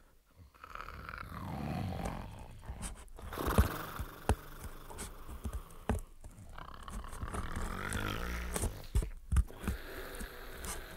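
Radio-play sound effects: the sleeping wolf's snoring, a rasping breath about every three seconds, with sharp snips of scissors cutting open its belly.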